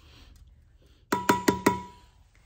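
Four quick blows of a rawhide mallet on a copper strip laid over a steel bar, hammering the strip's edge over into a fold. The blows come about a second in, roughly five a second, each ringing briefly with a metallic tone.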